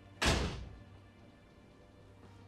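A single sharp bang about a quarter second in, dying away within half a second, over soft background music.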